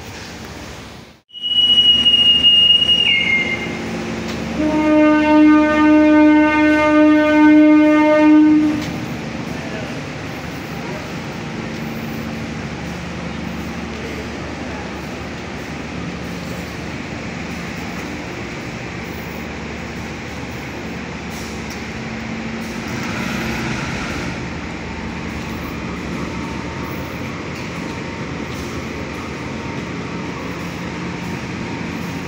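A short high whistle, then a departing diesel passenger train sounds its horn in one loud blast of about four seconds. Then its carriages roll past steadily, wheels rumbling on the rails.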